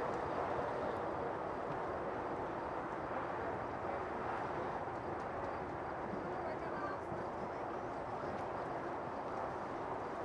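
Steady outdoor background noise with a low murmur of distant voices.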